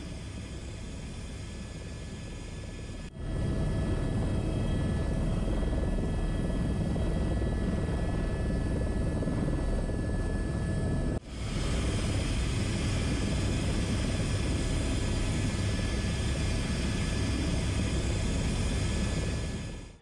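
Airbus H125 helicopter's turbine whine and rotor noise, heard from inside the cockpit. It runs steadily and becomes much louder about three seconds in, with a brief drop about eleven seconds in.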